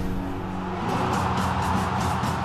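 Opening theme music with a whooshing noise swell rising over sustained low notes as the logo appears, and quick high ticks joining in near the end.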